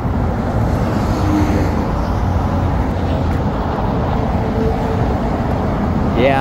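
Steady, loud interstate traffic: cars and trucks passing close by at highway speed, with the roar of tyres and engines.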